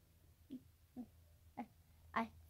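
Near silence: room tone with a low steady hum, broken by three faint, short pitched sounds about half a second apart.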